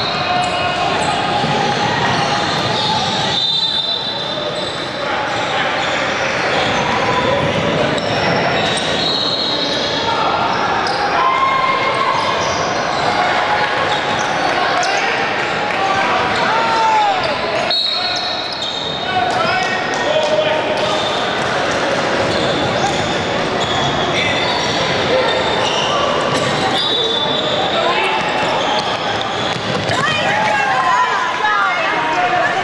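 Basketball game play in an echoing gym: a basketball bouncing on a hardwood court, sneakers squeaking, and players and spectators calling out.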